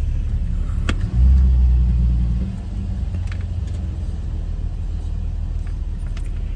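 A car's engine and rumble heard from inside the cabin, swelling louder for about a second and a half shortly after a second in, then settling back to a steady low rumble. A few faint clicks come through over it.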